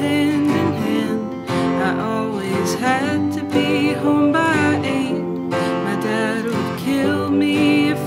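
Live band music: strummed acoustic guitars over sustained electric piano chords, playing steadily.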